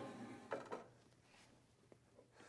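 Near silence: room tone, with a couple of faint, soft handling sounds about half a second in.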